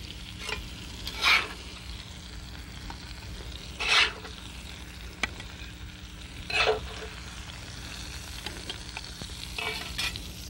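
Fish sizzling on a charcoal grill, with three short scrapes of a metal spatula as the cooked bass is lifted off the grate onto a plate.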